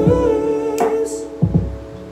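A man's voice holding one long sung note over a backing beat with kick-drum hits; the note fades out about a second and a half in while the beat carries on.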